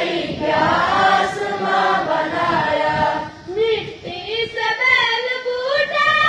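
A group of boys chanting a morning prayer together in a sung melody, phrase after phrase, with a brief pause a little past halfway.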